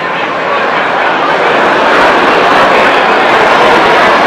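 Loud babble of many overlapping voices with no single voice standing out, swelling over the first two seconds and then holding steady.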